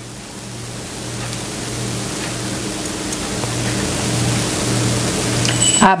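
Steady hiss with a low steady hum underneath, growing slowly louder over several seconds. There are no distinct knocks or clicks from the spooning of the whipped topping.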